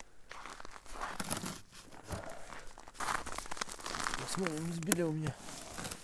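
Footsteps crunching on snow-covered river ice, with clothing rustling, in irregular bursts; a short bit of voice about four and a half seconds in.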